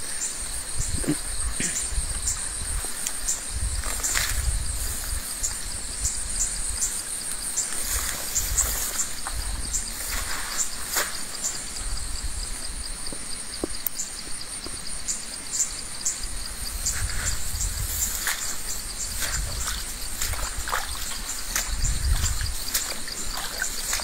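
Forest insects chirring steadily, a high continuous buzz with a fast even pulse, over a low rumble, with scattered short snaps and rustles of vegetation.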